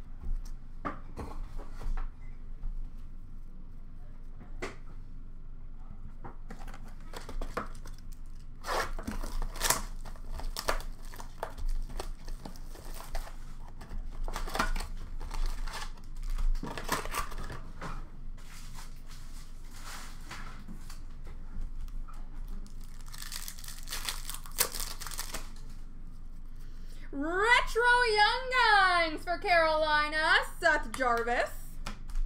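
Hockey card blaster boxes and foil card packs being torn open by hand: scattered crinkling of wrappers and soft clicks of cardboard and cards, with a longer ripping sound about three-quarters of the way through.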